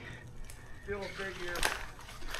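Speech: a faint, distant voice answers "a pig ear" about a second in, with a couple of sharp clicks.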